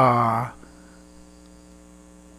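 A man's voice breaks off about half a second in, leaving a steady electrical mains hum in the recording.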